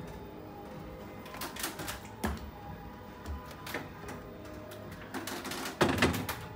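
Scattered clicks and knocks of plastic containers and bottles being handled inside an open refrigerator, with a louder knock near the end, over steady background music.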